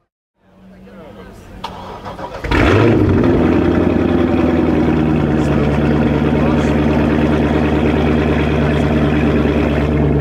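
A car engine starting about two and a half seconds in, then idling loudly and steadily.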